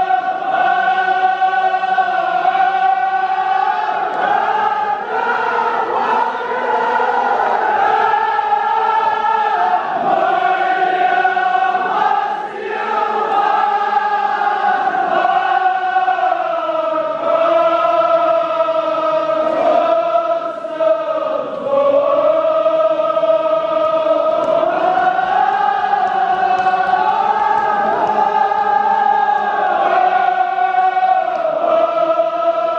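Many men's voices chanting a Kashmiri marsiya, a Muharram mourning elegy, together in unison, in long drawn-out notes that slowly rise and fall, with brief pauses for breath.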